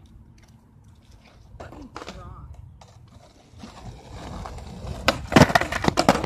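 Skateboard wheels rolling on concrete, growing louder, then several loud clacks of the board slamming onto the concrete near the end: a trick attempt that is nearly landed.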